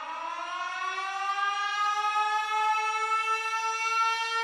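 A siren winding up: one long tone that rises slowly in pitch and grows louder, then levels off and holds.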